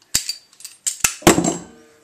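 A few sharp metal clinks and knocks as small steel pieces and hand tools are handled at a bench vise. The loudest knock comes about a second and a quarter in and rings briefly.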